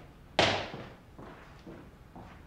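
A door shutting with one sharp thud about half a second in, dying away quickly.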